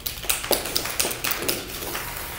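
A small group of people clapping, a quick irregular patter of separate claps that starts just after the beginning and thins out near the end.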